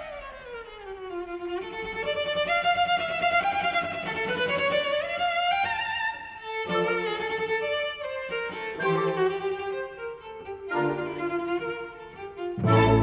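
Solo cello playing with string orchestra: a falling run that leads into a climbing line of notes, then shorter held notes over low accompanying chords.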